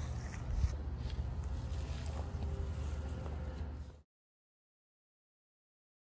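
Outdoor background noise with a steady low rumble, which cuts off suddenly about four seconds in.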